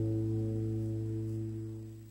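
A chord on two acoustic guitars ringing out and slowly dying away at the close of a song.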